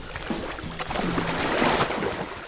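Background music with low held notes, and a rush of water splashing that swells through the second half as a swimmer drops back into a pool.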